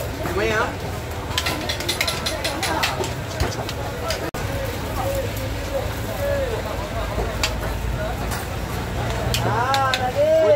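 Street-stall ambience: a steady low rumble with faint voices in the background and scattered light clicks, thickest early on, as a hand-held lever press squeezes rice-flour dough into putu mayam strands.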